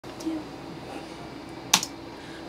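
Quiet room tone, then a single sharp click near the end, with a fainter click near the start.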